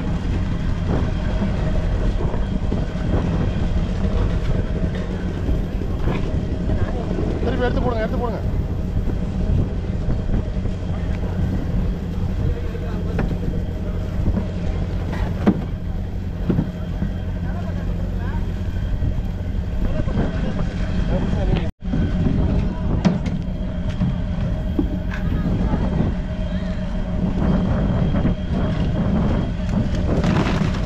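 Steady low hum of a fishing boat's diesel engine running, with voices faintly in the background; the sound cuts out for an instant a little past the middle.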